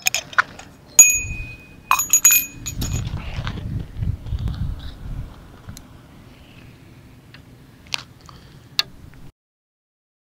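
Small bite-alarm bell on a surf fishing rod jingling, first about a second in and again around two seconds, each strike leaving a clear ringing tone, over rumbling handling noise from the rod. The sound cuts off suddenly shortly before the end.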